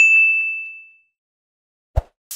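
A single bright notification-bell ding sound effect that rings out and fades over about a second. Near the end comes a short low thump.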